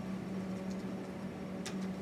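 Room tone with a steady low hum and one faint click near the end.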